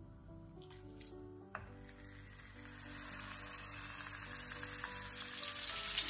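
Chicken thighs frying in hot oil in a pan, the sizzle growing steadily louder over the second half, under soft background music.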